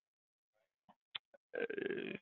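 Near silence, then a few faint clicks about a second in. Near the end comes a short creaky vocal sound from a man's throat, a drawn-out hesitation 'uhh'.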